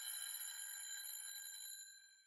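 Faint, high electronic ringing tone, several pitches held together, slowly fading out near the end.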